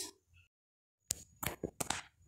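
Silence for the first second, then about six sharp clicks and light knocks in quick succession: shelled fava (lima) beans clinking against a stainless steel bowl as it is handled.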